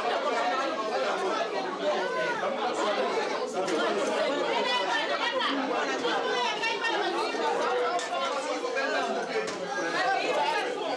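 Many people talking at once: overlapping conversation, with several voices going together and none standing out.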